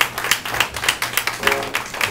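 Small audience clapping as the song ends: many irregular hand claps, with a few steady tones coming in near the end.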